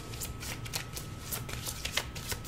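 A deck of tarot cards being shuffled by hand: a quick, irregular patter of light card flicks and slaps.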